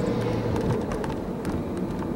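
Street traffic heard from inside a car: a steady low engine hum that eases off after about a second as a double-decker bus passes close in front, over a constant road-noise background.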